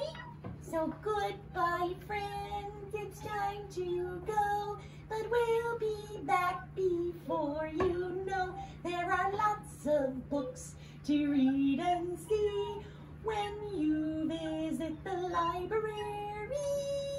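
A high, childlike voice singing a goodbye song, with the words "but we'll be back before you know… when you visit the library!", in held notes that glide between pitches.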